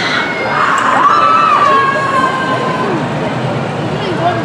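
Riders screaming and shouting together on a swinging pirate-ship ride, with one long, held scream from about a second in that slowly drops in pitch.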